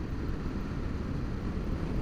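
Honda Varadero V-twin motorcycle cruising at a steady speed, its engine and the wind noise blending into one even, low rumble.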